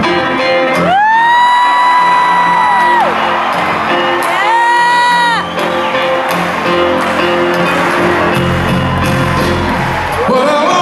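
Two long, high whoops from a concert audience member, the first held about two seconds and the second about a second, each sliding up at the start and falling away at the end. A band plays softly underneath with crowd noise.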